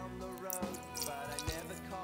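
Quiet background music with held notes and a soft beat about once a second.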